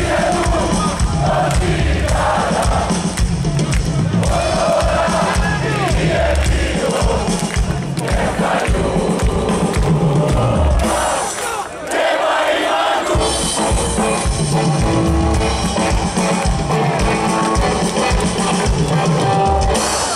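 Live rock band playing loud through a festival PA, heard from within the crowd, with singing and crowd voices over a heavy drum and bass beat. The bass and drums drop out for a moment about halfway through, then come back in.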